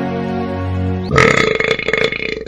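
Soft, sad film-score music with long held notes, broken off about a second in by a loud, long burp that lasts over a second.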